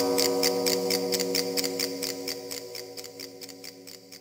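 Closing music: a sustained chord over a steady ticking beat, about four ticks a second, fading out.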